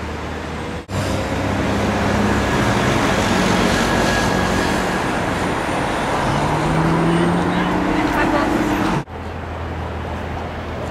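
Busy city road traffic: cars driving past close by, with engine notes rising as a vehicle accelerates near the end.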